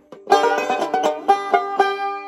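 Five-string resonator banjo picked in a quick run of bright plucked notes, several a second, starting about a quarter second in; the last notes are left ringing and fading near the end.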